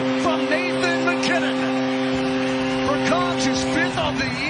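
Arena goal horn holding one steady, unbroken note while a big crowd cheers and shouts, celebrating a home goal.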